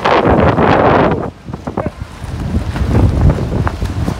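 Strong storm wind gusting over the microphone: a loud rushing gust in the first second, then lower, irregular rumbling buffets later on.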